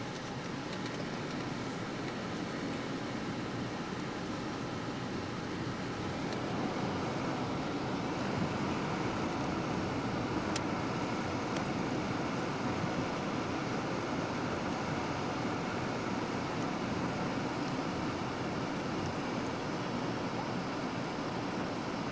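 Steady road and engine noise heard inside a moving car, growing a little louder about seven seconds in.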